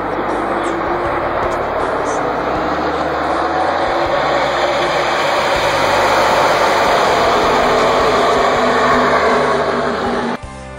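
A pack of NASCAR stock cars with V8 engines running past together at the start of the race, a dense, steady engine noise that grows louder in the second half as the field comes by.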